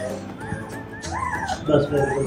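Young puppy whimpering in a few high, wavering squeaks while it is held to its mother's teat to nurse.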